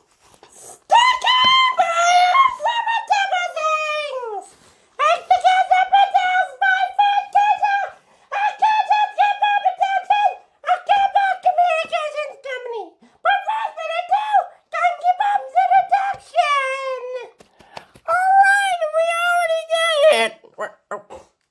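A very high-pitched, squeaky character voice chattering in rapid, wordless sing-song syllables, in several runs broken by short pauses, some runs ending in a falling glide.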